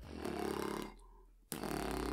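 Beatboxer's inhaled sub-bass (808) lip roll: the lips, tucked in an O shape, flutter with a low, rapid buzz. It is heard twice: the first fades out after about a second, and the next starts abruptly about halfway through.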